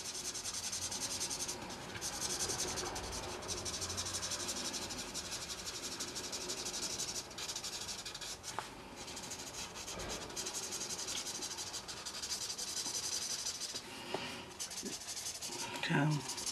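Promarker alcohol marker nib rubbing across paper in continuous colouring strokes, blending yellow ink, with a few brief pauses between strokes.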